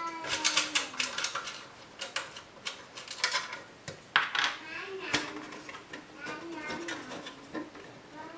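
Sharp clicks, taps and small metallic rattles from hands working the back-panel thumbscrews and metal case of a Synology DS413j NAS. A high-pitched voice talks in the background.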